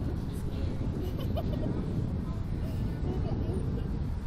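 Wind buffeting the microphone of a camera mounted on a moving Slingshot ride capsule: a steady low rumble, with faint voices over it.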